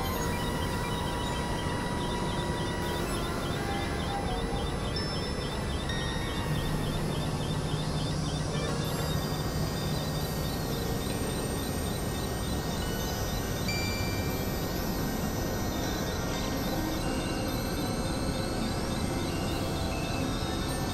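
Experimental synthesizer noise music: a dense, steady wash of noise with short held tones scattered through it. A low held tone sounds for a few seconds near the middle, and a fast, even ticking runs high above the noise through the first half.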